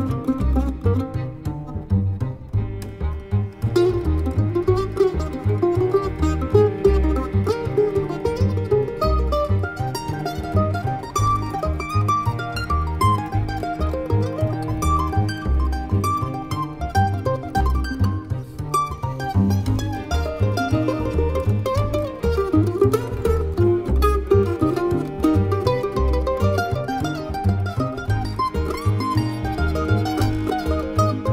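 Acoustic string band playing an instrumental passage: mandolin picking the melody over upright bass and cello.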